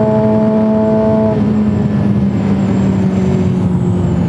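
A Suzuki GSX-R sportbike's inline-four engine runs at a steady cruising pitch under wind noise while riding. After about a second its note starts to sink slowly lower as the bike eases off.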